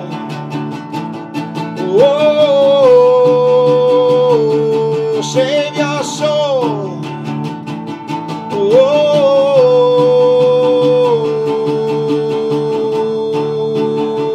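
A man singing long, drawn-out notes over a strummed acoustic guitar; the last note is held steady for several seconds near the end.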